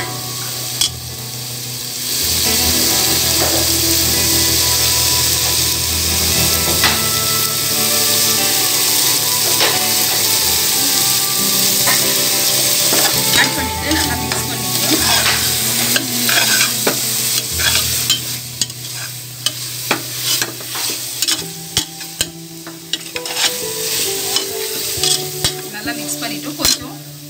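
Paneer, green peas and onions sizzling in oil in an aluminium pressure cooker as a metal spatula stirs in the freshly added spice powders. The frying hiss is steady at first; from about halfway the spatula scrapes and knocks against the pot in many sharp clicks.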